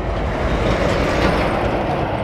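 A road vehicle going past: a steady rush of tyre and engine noise.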